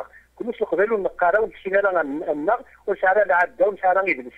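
Speech only: a voice talking in short phrases with brief pauses, over a faint steady low hum.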